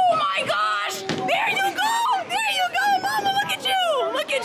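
Excited, high-pitched squealing and shrieking voices cheering a strike, in a run of rising and falling cries.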